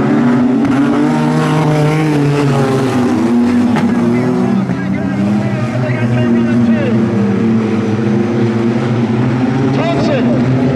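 A pack of wingless sprint car engines racing on a dirt oval, several engines sounding at once. Their pitch rises and falls as the cars get on and off the throttle through the turns and down the straight.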